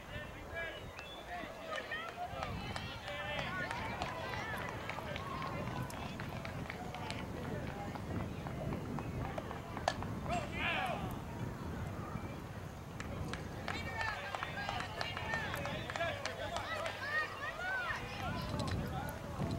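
Overlapping voices of young players and onlookers calling out and chattering at a distance, with one sharp crack about ten seconds in, followed by a brief burst of calls.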